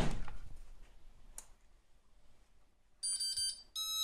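Electronic beeping from an EasyTurn queue-number display while its reset button is held down to change the channel: a high, multi-tone beep starts about three seconds in, breaks off briefly and sounds again near the end. A short rustle of handling the unit comes at the start.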